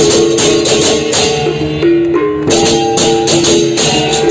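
A Balinese baleganjur marching gamelan playing: fast, steady crash cymbals over kendang drums and a ringing, shifting melody of pitched gong notes. The cymbals drop back briefly about halfway through, then come in again.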